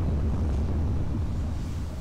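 A low, steady rumble with a faint windy hiss from an animated fight's sound effects, easing off slightly near the end.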